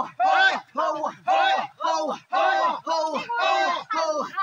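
A group of people chanting short shouted calls together in a steady rhythm, about two a second, each call dropping in pitch at its end.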